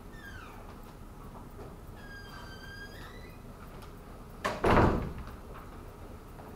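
Two high squeaks, the first sliding down in pitch and the second held steady for about a second, then a loud, short burst of noise about four and a half seconds in.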